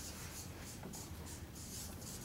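Felt-tip marker writing on flip-chart paper: a quick run of short, faint strokes as a word is written out.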